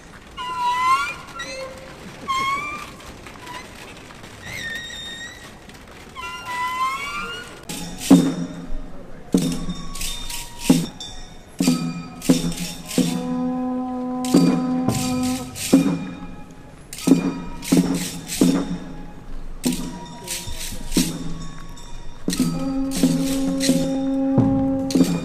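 Music from a passing festival procession. A few gliding, high-pitched notes sound in the first seven seconds. From about eight seconds in comes a run of sharp struck beats, some followed by a held low tone.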